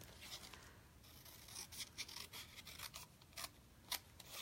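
Scissors cutting small stamped words out of paper: a few faint, separate snips, mostly in the second half.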